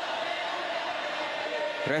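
Steady crowd noise filling a football stadium during play, with no distinct cheers or impacts.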